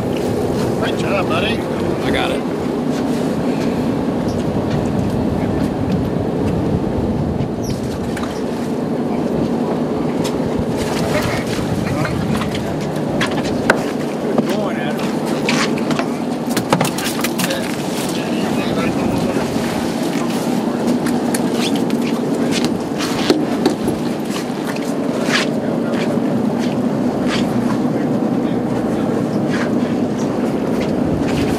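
A boat's engine drones steadily while the boat sits offshore, with sharp clicks and knocks of fishing tackle and gear handled on deck scattered through. Indistinct voices can be heard under it.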